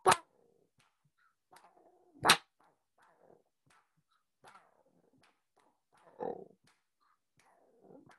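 A person beatboxing chicken and rooster sounds in rhythm: faint, scattered clucks and mouth pops, with a sharp clap about two seconds in and a louder cluck a little after six seconds.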